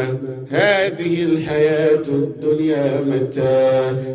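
A man chanting in Arabic into a microphone, a melodic Qur'anic-style recitation with long held notes and gliding pitch.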